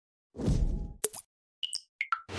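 Cartoon-style transition sound effects for an animated logo: a short swoosh, a sharp click about a second in, then a couple of quick pitched pops near the end.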